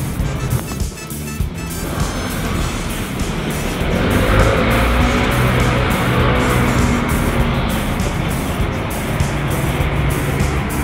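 A motor vehicle passes on the street, its noise swelling from about two seconds in, loudest around the middle, then easing off, over steady background music.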